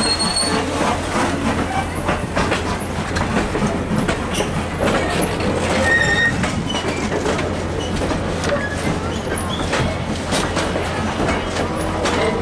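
Railroad passenger coaches rolling past close by on the track: a steady rumble of wheels on rail, with knocks over the rail joints. Short, high wheel squeals come near the start and about six seconds in.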